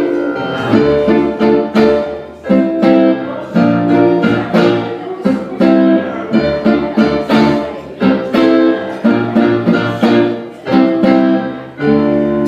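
Guitar playing an instrumental passage of rhythmic, sharply attacked chords, with short breaks between phrases.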